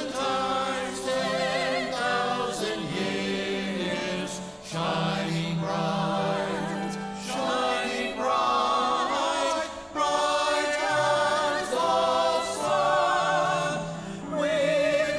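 A small group of church singers singing together in parts, the voices held with clear vibrato. Their phrases break briefly about five and ten seconds in.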